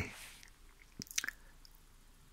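A few faint, short mouth clicks and lip smacks about a second in, as a man pauses between words, over a quiet room.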